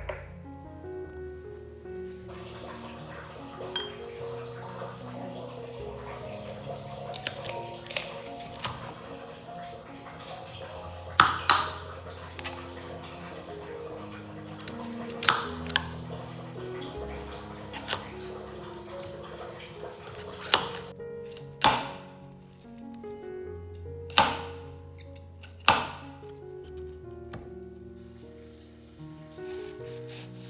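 Background music playing under a chef's knife chopping vegetables on a plastic cutting board. About six sharp knocks of the blade hitting the board come a few seconds apart through the second half, louder than the music.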